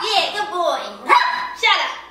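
A small dog barking several times in quick succession at a man looming over it.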